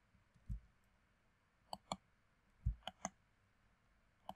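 Computer mouse clicking: two pairs of quick, faint clicks about a second apart, with a couple of soft low thumps.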